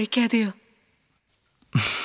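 Crickets chirping in short, evenly spaced high trills, about two a second. A woman speaks over them in the first half second and a man starts to speak near the end.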